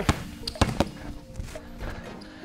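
A basketball bounced hard on a wooden court floor: three sharp dribbles in the first second as the player drives to the basket, over background music.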